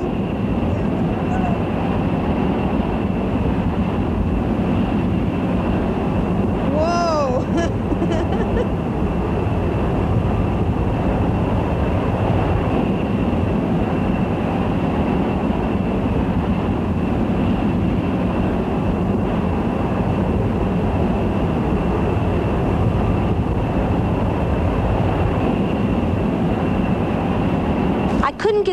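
Steady loud cabin noise inside a KC-135 jet in flight, engine and airflow noise with a thin steady high whine. A short rising-and-falling voice exclamation about seven seconds in.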